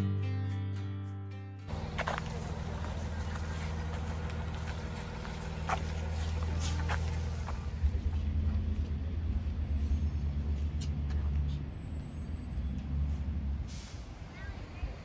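Background guitar music ends in the first second and a half. Then comes the steady low rumble of a shuttle bus driving along, heard from inside, with a few light knocks and clicks.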